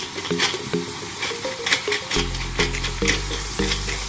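Chicken breasts sizzling in coconut oil in a frying pan while a hand pepper grinder is twisted over it, with repeated short crunches of peppercorns being cracked. Background music plays throughout, and its bass comes in about halfway.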